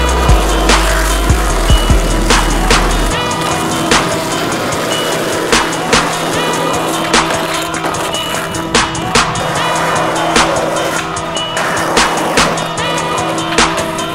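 Backing music with sustained tones and a beat, mixed with skateboard sounds: hard wheels rolling on asphalt and sharp clacks of the board popping and landing, every half second to a second.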